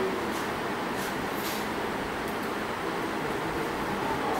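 Small DC motor of a speed-control trainer running with a steady mechanical hum and hiss while its speed is slowly raised toward 1200 rpm. A few faint clicks come early on.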